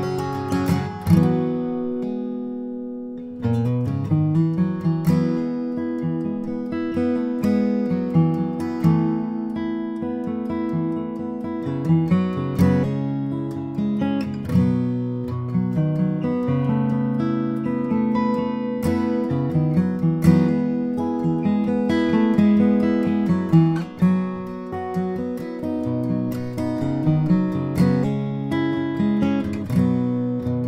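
A 2009 Bourgeois DB Signature dreadnought acoustic guitar, with an Adirondack spruce top and Madagascar rosewood back and sides, being played. A chord rings and fades in the first seconds, then from about three and a half seconds in the playing runs on steadily with picked notes and strummed chords.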